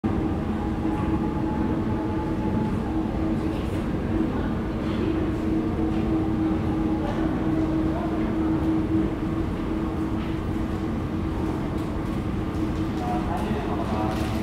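Steady city din: a continuous rumble with a constant low hum that holds one pitch throughout.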